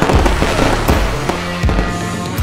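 Fireworks going off in a series of sharp bangs about half a second apart, with music playing alongside.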